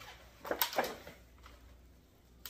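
Handling noise from a raw turkey being worked in a disposable aluminium foil pan as its wing tips are tucked behind the neck flap: two short rustles a little over half a second in, then quiet room tone.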